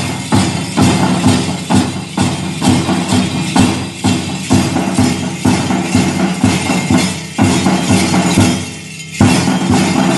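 School drum and bugle band playing a march: drums beat about two to three times a second under held brass notes. The playing drops away briefly near nine seconds, then comes back in with a strong beat.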